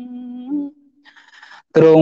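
A voice chanting Khmer smot. A long steady note tapers off and ends about halfway through, followed by a short near-silent pause, and then a new phrase starts loudly with sliding pitch near the end.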